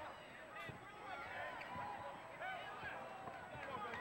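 Fairly quiet arena crowd hubbub under live basketball play, with many short sneaker squeaks on the hardwood and a couple of thumps from the ball or players' feet.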